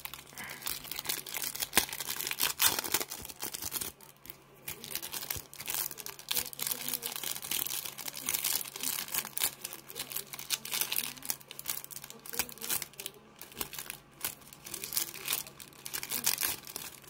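Plastic wrapper of a trading-card pack crinkling and tearing as it is worked open by hand, with irregular sharp crackles throughout.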